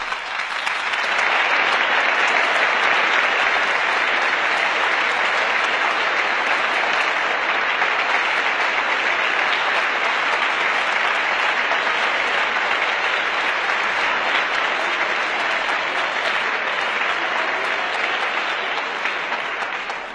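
Long, steady applause from the members of a parliamentary assembly, building up over the first second or so and carrying on without a break, in response to a speech.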